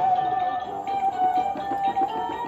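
Electronic music from an animated Halloween toy, a plush black cat that pops up out of a lit plush jack-o'-lantern: one long held note over a quick pattern of short plucked-sounding notes.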